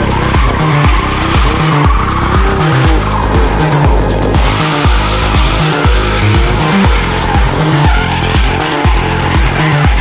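Background music with a steady beat, laid over a drift car's engine and its tyres squealing as it slides sideways through a corner.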